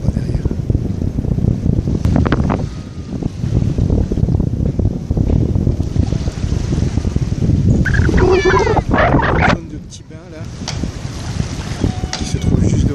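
Wind buffeting the microphone with a heavy low rumble, over the background of a busy beach with people's voices. About eight seconds in, a high wavering voice calls out for a second or so.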